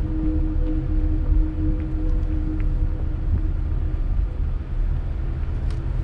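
Car cabin noise while driving slowly: a steady low rumble of engine and tyres on the road, with a faint steady hum over it.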